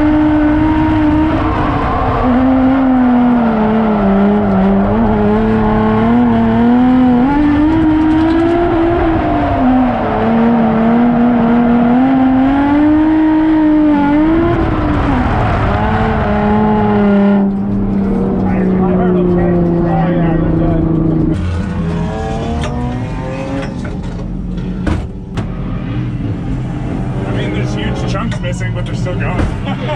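Drift car's engine heard from inside the cabin, revving up and down repeatedly through a drift run. About 17 seconds in the revving stops and the pitch falls steadily as the car slows, and from about 21 seconds it runs lower and quieter.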